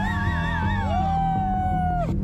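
Several people letting out long, held yelling cries at different pitches that overlap, one of them wavering up and down; they break off together at the very end.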